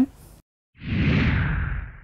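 Whoosh sound effect of a logo sting, starting about a second in: a rushing sweep with a deep rumble underneath that slowly fades out.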